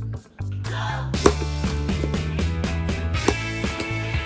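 Upbeat background music with a steady bass line and beat. It drops out briefly near the start, and there are two sharp clicks, one about a second in and one just past three seconds.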